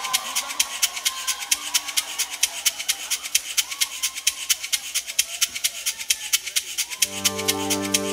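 A live band's quiet interlude: a shaker-like percussion keeps a quick, even ticking rhythm. About seven seconds in, a held keyboard chord comes in under it.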